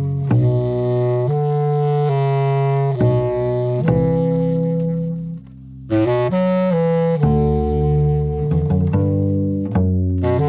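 Instrumental music: a bass clarinet holds long, low notes over double bass and synthesizer. The sound dips briefly about halfway through, then quicker notes follow.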